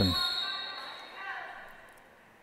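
Referee's whistle: one short, high blast right at the start, ringing on and fading over about a second and a half in the large gym, the signal that authorises the serve.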